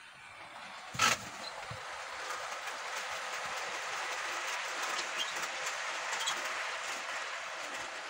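Model train running past close by on its track: a steady rolling whirr of wheels and motor that swells as it nears and eases slightly, with small clicks from the rail joints. A single sharp knock about a second in.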